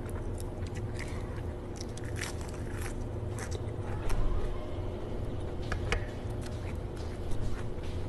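Close-up chewing and mouth sounds of someone eating steamed squid: scattered short wet clicks and smacks over a steady low hum, with one louder knock about halfway through.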